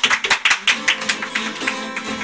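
Acoustic guitar opening a song with a fast run of sharp percussive strums, about six a second, getting weaker toward the end while the strings ring underneath.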